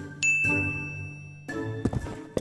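A bright, high bell-like ding, a cartoon sound effect, that rings steadily for over a second and then cuts off suddenly, over soft children's background music; a few quick knocks follow near the end.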